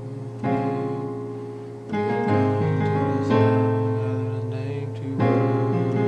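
Piano playing slow gospel chords in the key of A-flat, both hands, each chord held and a new one struck every second or two, with a low bass note coming in about two seconds in.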